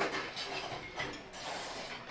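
Faint dining-room background: an even low hum of the room with a few light clicks and clinks, such as tableware.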